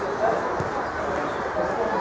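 Overlapping voices of players and onlookers calling out across an outdoor football pitch, with short pitched shouts among the chatter.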